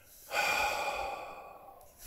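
A man's long, breathy sigh. It comes in about a third of a second in and fades away over the next second and a half.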